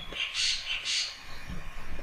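Stylus writing on a tablet or digital whiteboard: two short, soft hissy strokes about half a second apart.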